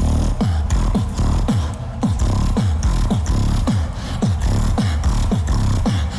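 Beatboxing into a handheld microphone: a steady beat of deep bass kicks, each dropping quickly in pitch, about two a second, over a sustained low bass drone.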